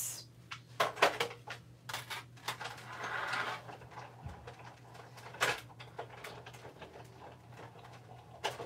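Big Shot manual die-cutting and embossing machine being hand-cranked, with a plate-and-embossing-folder stack rolled back and forth through its rollers. Scattered clicks and knocks, with a louder grinding stretch a few seconds in.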